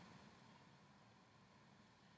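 Near silence: faint room tone with low hiss.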